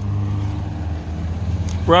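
A steady low mechanical hum. A man's voice starts at the very end.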